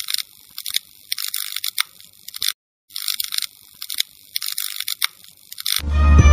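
A thin, high-pitched rattling rhythm with nothing low underneath, played twice with a short break between, much quieter than the music around it. Loud full backing music starts again right at the end.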